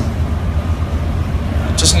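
A steady low hum, with a man's voice starting a word near the end.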